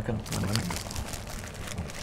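Clear plastic wrapping of a rose bouquet crinkling as the bouquet is handed over, with a few brief spoken words near the start.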